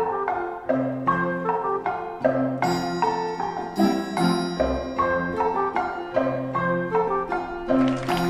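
Folk dance music: a quick melody of sharply struck, ringing notes over a bass line that moves about once a second.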